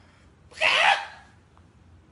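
A man imitating a chicken with his voice: one short squawk about half a second in.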